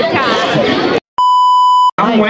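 Girls' voices talking and laughing, cut off abruptly about a second in; after a brief silence, a steady high electronic beep, edited in, lasts about three quarters of a second and stops suddenly.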